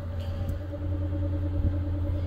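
A car engine idling: a steady low rumble with a faint, even hum above it.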